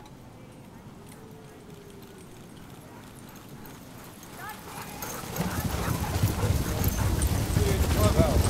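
A sled dog team running on packed snow toward the listener: the quick patter of many paws, the gangline and the sled grow louder from about halfway through and are loudest as the team passes close by near the end.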